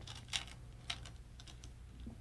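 Go stones clicking against each other in wooden bowls as players' hands dig into them: a few faint, scattered clicks, the clearest about a third of a second in and another near the one-second mark, over a low steady hum.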